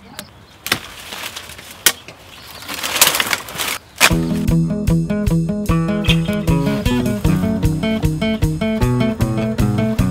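Long-handled loppers snipping branches, sharp clicks with rustling twigs and leaves, for about the first four seconds. Then background music of plucked guitar-like strings with a steady beat starts suddenly and carries on.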